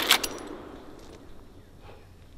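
The echo of a Marlin 1894 .44 Magnum lever-action rifle shot dying away over the first second, with a few light metallic clicks near the start as the lever is worked.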